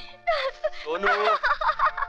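A woman giggling and squealing in quick, wavering, high-pitched bursts, with a short lull just after the start.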